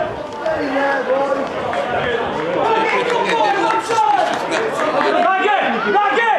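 Several voices shouting and chattering over one another, indistinct, with no single clear speaker.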